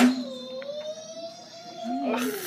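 A voice holding one long note, slowly rising in pitch, after a short knock.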